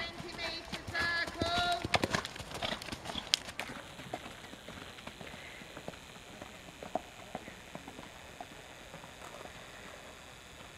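Horse trotting on an all-weather arena surface, its hoofbeats heard as soft, faint, irregular thuds. During the first three seconds or so a pitched voice and some sharper knocks sit over them.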